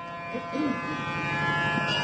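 Harmonium holding a steady reedy chord between sung lines of a qawwali, slowly swelling louder.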